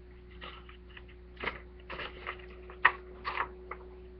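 Paper being handled close to the microphone: a string of short crinkly rustles, the sharpest just before three seconds in.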